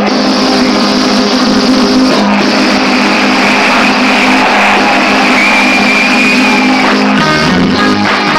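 Hindi film song's orchestral introduction: a loud, steady held chord over a dense wash of instruments, with a quick, rhythmic plucked-string pattern coming in near the end.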